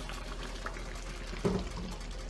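Thick beef and black bean chili bubbling and popping in a pot, a steady sputter with small scattered pops. A brief louder sound comes about a second and a half in.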